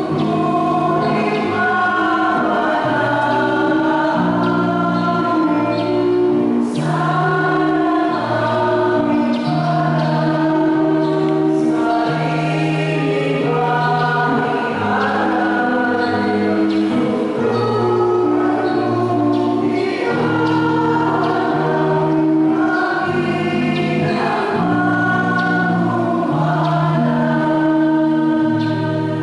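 Church choir singing a hymn in held notes, changing about once a second.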